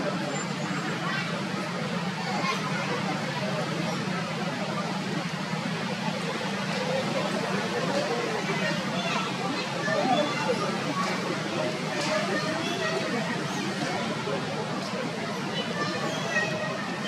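People's voices talking in the background, unclear chatter, over a steady low hum.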